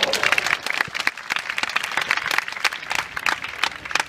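Spectators' applause at a tennis match as a point ends: many hands clapping quickly and densely, thinning out near the end.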